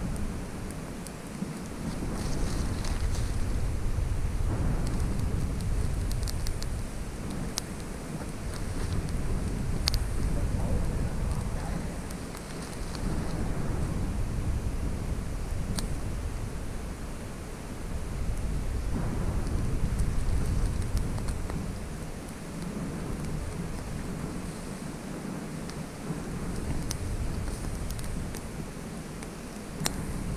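Low rumbling wind noise buffeting the microphone, swelling and easing every few seconds, with a few scattered sharp clicks.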